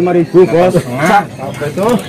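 Several men's voices talking over each other in a crowd, loud and unclear, with short breaks in between.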